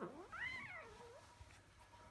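A four-month-old blue Maine Coon kitten gives one short, high meow during a play-fight with its littermate. The meow rises in pitch, then falls away, and is over within about a second.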